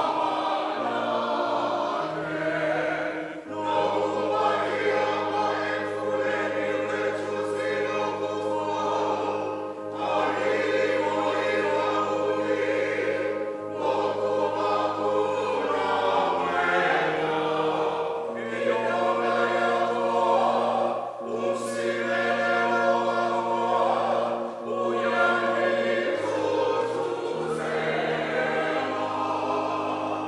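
Congregation singing a hymn together in a church, over steady held low notes that change every few seconds.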